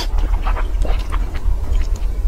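Noodles being slurped into the mouth in several short, wet pulls, over a steady low hum.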